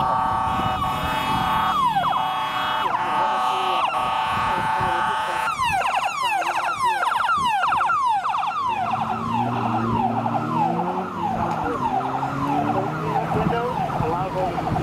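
Electronic siren on a fire company pickup response vehicle. It holds a steady horn-like tone for about five seconds, then switches to rapid, repeating falling sweeps.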